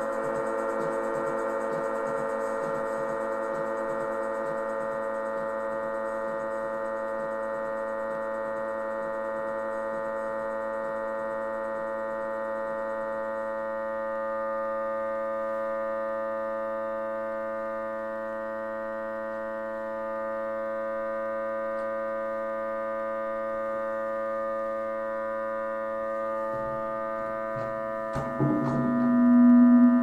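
Electronic keyboard synthesizer holding a sustained drone chord of steady tones, with a rapid low pulsing beneath it that fades out about halfway through. Near the end a louder low tone swells up.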